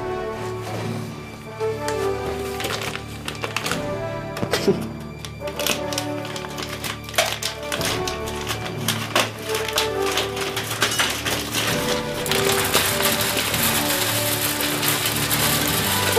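Background music over the clicking rattle of wood pellets being poured from a sack into a pellet stove's hopper, turning into a steadier rushing hiss near the end as the pour runs faster.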